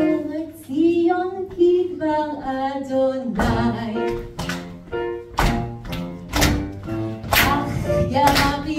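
A woman singing a song into a microphone, amplified through a PA in a small hall, her voice moving between held notes. About three seconds in, a beat of sharp, deep strikes comes in under her singing.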